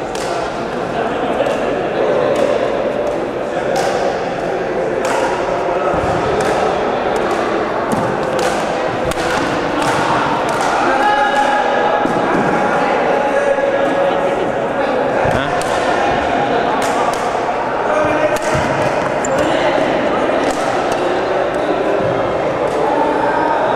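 Babble of many voices in a large indoor sports hall, with frequent sharp clicks of badminton rackets striking shuttlecocks and a few low thuds.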